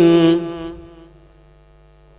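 A man's melodic Quran recitation over a microphone: a long held note closing a verse stops about half a second in and dies away in echo, followed by a quiet breath pause before the next verse.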